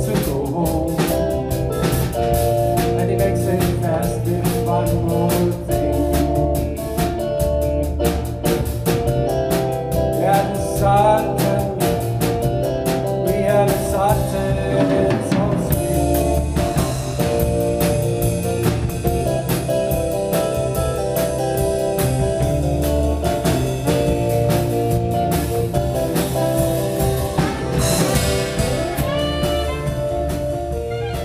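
Live rock band playing: stage keyboard chords over a drum kit beat. The drumming is busy in the first half, and longer held chords take over from about halfway.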